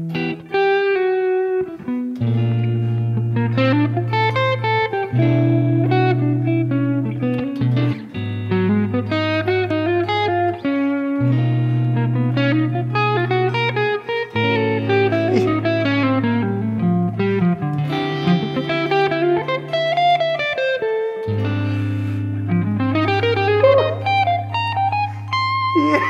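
Two electric guitars, a Telecaster-style and a Stratocaster-style, playing a jazz duet. Chords with low root notes are held for about three seconds each, while the other guitar plays moving single-note lines above them.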